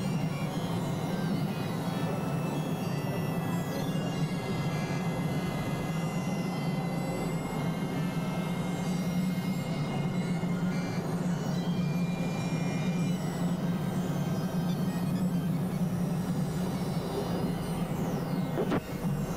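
Experimental electronic drone music from synthesizers: a steady, dense low hum under a noisy wash, with thin high tones held above it and a few faint falling glides.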